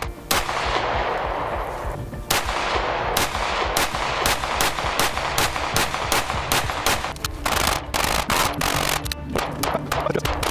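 Strike One ERGAL 9 mm pistol firing: one shot just after the start with a long, noisy tail, then from about two seconds on rapid strings of shots, several a second. Background music runs underneath.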